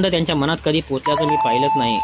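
A steady electronic tone, about a second long, sounding under a voice reading aloud in Marathi. It starts about halfway in at a slightly higher pitch and then settles at a lower steady pitch.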